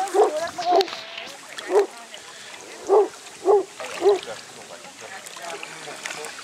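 A Newfoundland dog barking, about six short barks over the first four seconds.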